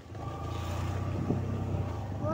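A 100cc motorcycle engine runs steadily as the bike rides along a rough dirt track. Its low drone comes up at the start and then holds level.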